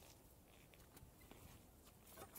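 Near silence: faint open-air background with a couple of faint short ticks.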